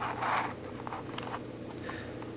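Plastic pieces of a six-layer Royal Pyraminx puzzle rasping against each other as a layer is turned, in a short scraping burst in the first half-second, followed by a few faint clicks.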